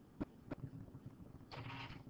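Faint room sound: two soft clicks, then a brief rustle about a second and a half in, over a low steady hum.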